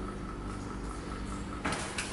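QS138 90H 4 kW permanent-magnet synchronous mid-drive motor running under its controller in reverse, with a steady electric whine. A short clatter comes near the end.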